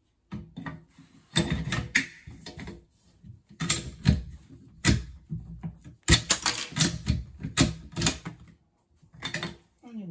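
Sharp metallic clicks and clacks of a magazine being pushed into and pulled out of a bolt-action rifle chassis's magazine well, in several quick runs.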